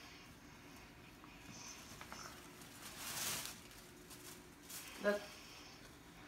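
Quiet room with a brief soft rustle of gift paper about three seconds in.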